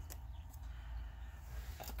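Quiet room with a steady low hum and faint rustling of a small paper sticker being handled.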